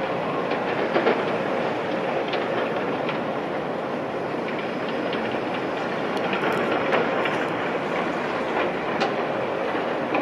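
Kobelco SK210 hydraulic excavator running under load as it digs soil and swings the bucket over a dump truck. Its engine and hydraulics make a steady noise, with scattered knocks and clatter from the bucket and soil, the loudest about a second in.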